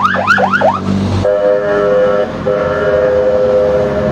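Emergency vehicle siren in fast yelp, rising whoops about five a second, which stops about a second in. A steady vehicle horn then sounds in two long blasts, the second nearly two seconds long.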